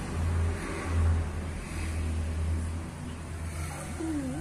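A low rumble that swells and fades, loudest about a second in.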